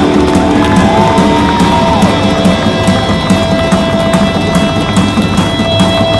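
Live rock band playing loud: electric guitar over a steady drum beat, with a bent guitar note and then a long held note near the end.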